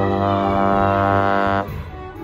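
Trombone, played close to the microphone, holding one long note that stops about three-quarters of the way through.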